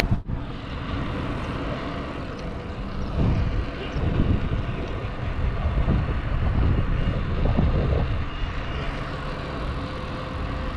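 Wind buffeting the camera's microphone as a bicycle rides along a road: a steady low rumble that swells and eases, with no clear tones.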